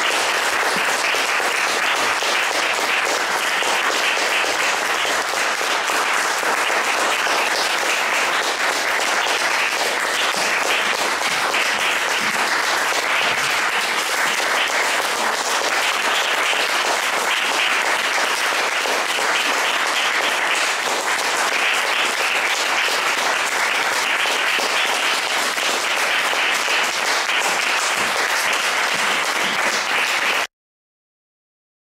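Audience applauding: a dense, steady sustained clapping.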